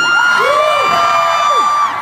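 Concert crowd of fans screaming and cheering, many high voices held in long overlapping screams that drop away near the end.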